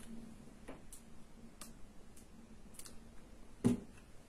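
Faint ticks and clicks from handling a cor anglais, its metal keys and the bocal being fitted into the upper joint, with one louder knock near the end.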